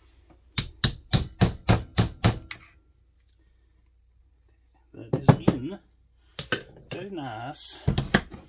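A hammer tapping a small metal driver to seat a washer over the crankshaft of a Homelite XL-76 chainsaw: about eight quick, sharp metallic taps at roughly four a second, then a pause and a few more taps in the second half.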